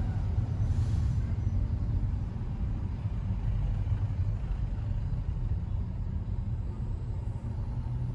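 Steady low rumble inside the cabin of a Hyundai Accent 1.5L four-cylinder car moving slowly in traffic: engine and road noise heard from within the car.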